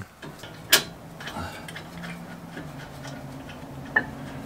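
A sharp metallic click about a second in and another near the end as a Toyota Tundra front brake caliper is fitted over the rotor onto its mount, over a faint steady hum.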